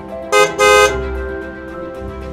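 Car horn sounding twice, a short toot followed by a slightly longer one, over background music.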